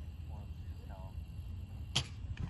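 A baseball bat striking a ball once near the end, a single sharp crack, over faint distant voices.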